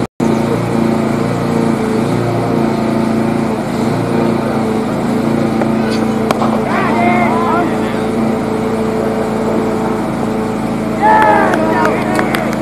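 A motor running steadily at an even pitch, with short calls from voices about seven seconds in and again near the end.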